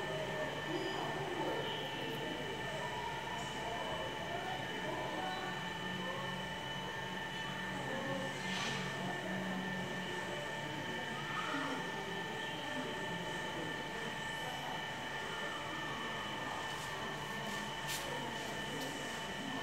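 A steady mechanical hum with a constant high, even whine and a low drone underneath.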